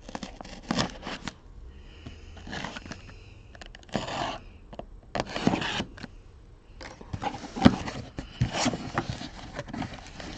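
A cardboard shipping case of hockey card boxes being opened by hand: the cardboard scrapes and tears in irregular bursts, with sharper clicks and knocks as the flaps are pulled up near the end.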